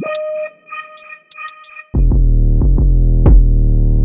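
Electronic hip-hop beat laid over the footage: a sparse synth-keys line with hi-hat ticks for the first half, then the deep bass comes back in about two seconds in.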